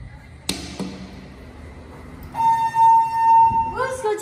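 A sharp metallic knock with a brief ringing tail, then a loud, steady electronic beep from the elevator, held at one pitch for about a second and a half before it cuts off. A voice starts right at the end.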